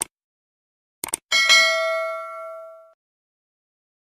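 Subscribe-button animation sound effects: a short mouse click, then a quick double click about a second in, followed by a bright notification-bell ding that rings and fades out over about a second and a half.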